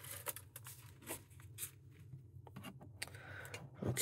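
Cardboard mailer box being opened by hand: a few faint scrapes and rustles of cardboard, with a rougher rustle near the end.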